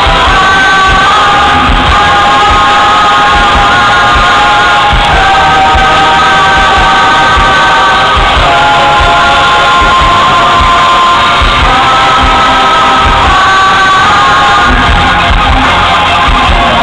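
Live concert music played over a large PA, recorded from the audience: a band with a steady drum beat and long held melody notes, very loud throughout.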